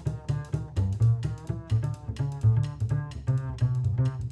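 Upright double bass played pizzicato in a jazz solo: a steady run of plucked low notes, several a second, each with a sharp attack.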